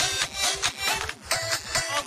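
Live disco polo dance music played through a stage PA, with a steady beat.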